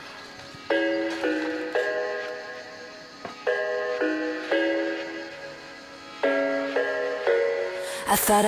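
Background music: a slow tune of notes that start sharply and ring out and fade, coming in small groups every few seconds.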